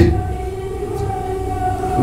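A steady chord of several tones held without change for about two seconds, with no speech over it.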